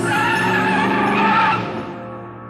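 A high, wavering, screech-like tone over the soundtrack music, dying away a little before the end.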